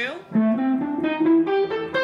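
Clean electric guitar playing the A minor blues scale upward, single picked notes climbing in steps about five a second.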